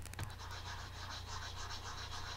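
Stylus of a pressure-sensitive pen tablet scratching faintly over the tablet surface in a quick run of light, repeated strokes.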